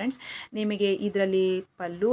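A woman speaking, with a short hiss just after the start and a brief pause near the end.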